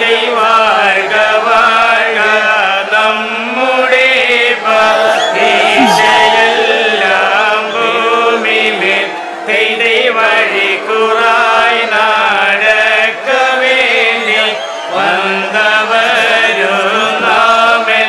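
Group of male voices chanting together, a prayer-style chant that rises and falls in pitch.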